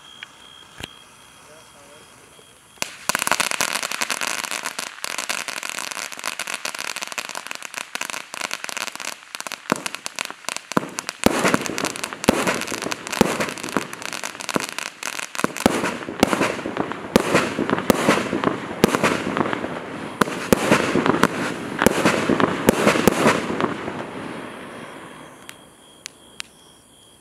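Pink gender-reveal fountain firework erupting suddenly about three seconds in, then burning with a loud steady hiss full of dense crackling. The crackling grows heavier in the second half and dies away over the last couple of seconds.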